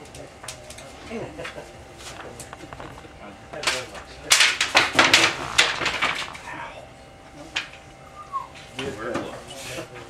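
Bamboo culm splitting by hand: a dense run of sharp cracks and crackles for about two seconds midway as the split runs along the cane fibres, with a few more single cracks afterwards.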